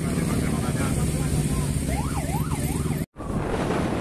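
Many motorcycle engines running as a convoy passes. About two seconds in, a siren sweeps rapidly up and down a few times. The sound drops out abruptly just after three seconds, then resumes as steady engine and road noise.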